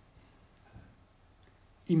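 Near silence between phrases of speech, broken by a few faint small clicks. A man's voice starts again near the end.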